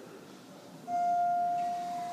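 Otis Gen 2 elevator arrival chime: one steady bell-like tone that starts suddenly a little under a second in and fades away slowly. It marks a car arriving to go up.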